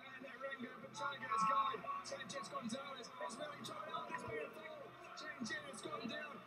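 Soundtrack of track-race broadcast footage, playing quietly: a voice with some music, loudest about a second and a half in.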